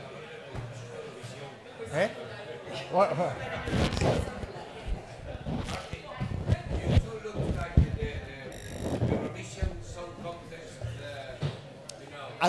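Indistinct, off-microphone voices in a large hall, mixed with a series of knocks and thumps.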